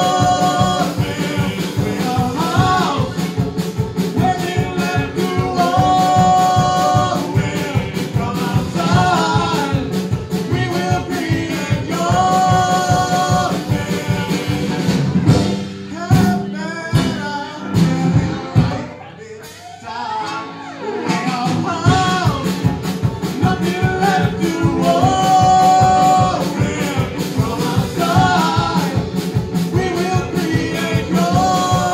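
A live folk band plays a song: cello, piano accordion and banjo over a drum kit, with the cellist and accordionist singing together. About halfway through, the bass and beat drop away for a few seconds of sparser, quieter playing, and then the full band comes back in.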